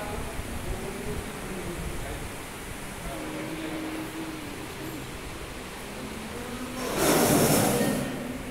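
Indistinct voices over a steady background rumble, with wavering voice-like tones. About seven seconds in there is a loud rushing noise lasting about a second.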